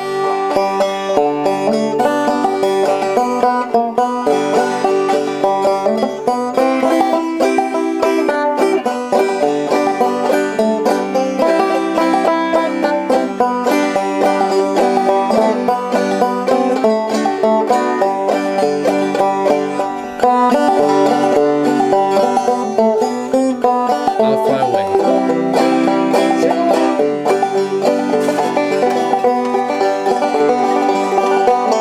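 Openback banjo played frailing (clawhammer) style: a steady, rhythmic old-time tune of bright plucked notes and brushed strums.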